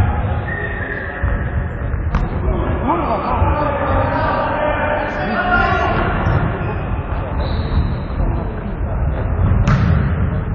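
Indoor futsal game in a sports hall: players' shouts over the thuds of the ball and running feet on the wooden floor. A sharp strike of the ball comes about two seconds in and another near the end.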